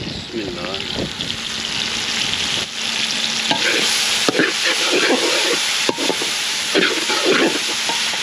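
Tomato, onion and green-chilli masala frying in ghee in an aluminium karahi, sizzling steadily as a perforated metal spoon stirs in the freshly added spices. The spoon scrapes the pan and knocks against it a few times.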